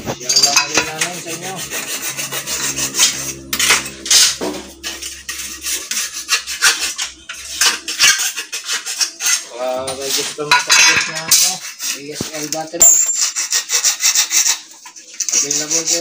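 Rough scraping and rasping strokes from hand work on plastic cable trunking, coming fast and unevenly with short pauses.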